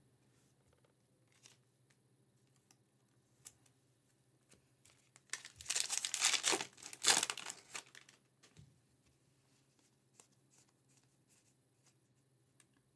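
A trading-card pack wrapper being torn open by hand: a crinkly ripping and rustling that lasts about two and a half seconds, starting a little before the middle. Faint clicks of cards being handled come before and after it.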